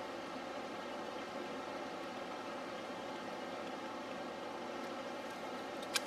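Steady background hiss with a faint hum, room tone with no distinct sounds; a small tick near the end.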